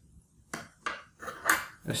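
A handful of light clicks and knocks from a metal hard-drive caddy and an SSD being handled. They start about half a second in.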